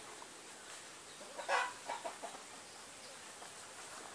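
A chicken clucking: one loud cluck about a second and a half in, followed by a few softer, shorter clucks.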